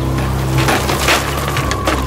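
Cartoon sound effect of a straw house collapsing: a noisy crash with several sharp cracks, the last one near the end.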